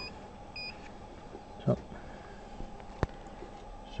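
Two short electronic beeps from the touchscreen keypad of a Vetron 300 shockwave therapy unit as keys are pressed, both within the first second. A single sharp click comes about three seconds in.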